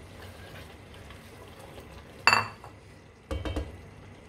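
A spatula stirring dal in a metal cooking pot, with one sharp metallic clink that rings briefly about two seconds in and a short run of knocks against the pot near the end.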